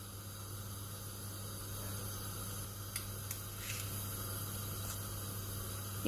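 Sesame oil heating in a clay pot on the stove, not yet hot enough for the mustard seeds: a faint steady hiss over a low hum, with a few faint ticks around the middle.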